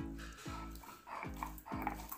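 Background music: a repeating pitched note pattern, each note dipping in pitch at its start, about two notes a second.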